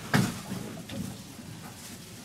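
A single sharp thump just after the start inside an elevator car, followed by a couple of faint clicks about a second in, over the steady noise of the car.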